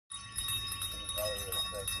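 Many bells ringing together at once, a jangle of several steady high pitches, with a voice coming in over it near the end.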